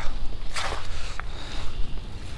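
Footsteps on a woodland trail littered with leaves, twigs and fallen sticks. There is a brushy rustle about half a second in and a single sharp click just after a second, over a steady low rumble.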